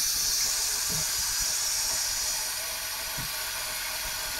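Water running steadily from a tap into a sink, left on to bring the warm water through while it still runs cold.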